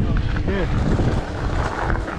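Wind rumbling over the camera microphone as a bicycle rolls over a dirt and gravel surface, with tyre crunch mixed in; voices are heard faintly in the background about half a second in.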